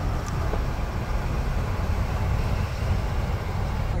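Steady low road and engine rumble heard from inside the cab of a Class C motorhome cruising on a paved highway.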